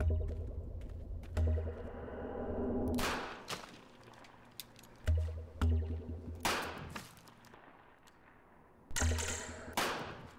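Film score music with deep, pulsing bass, cut by three sharp handgun shots a few seconds apart.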